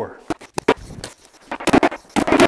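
A few sharp taps, then a quick run of sharp cracks near the end: a hammer stapler slapping staples into foam-and-paper flooring underlayment.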